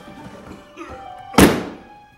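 A single hard thump about one and a half seconds in, over quiet background music.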